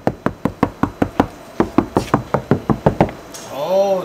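Rapid fist knocks on the outer steel skin of a Hyundai Genesis car door, about six a second in two quick runs, ending near the three-second mark. They are a tap test of the freshly applied sound-deadening: one door still sounds hollow and the other sounds solid.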